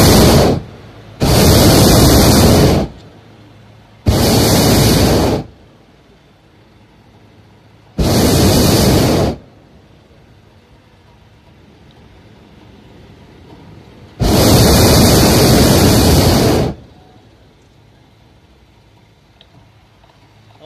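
Hot air balloon's propane burner firing in repeated blasts: a loud, even roar in five bursts of one to two and a half seconds each, the first cut short at the very start, with quieter gaps between. The pilot is heating the air in the envelope to hold or gain height.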